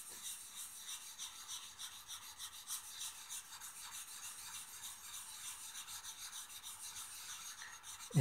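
A diamond plate is rubbed back and forth on a wet Nakayama natural whetstone to raise a slurry. It makes a faint, even rasping that swells a little with each short stroke.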